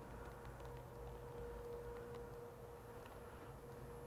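Quiet background with a faint steady hum.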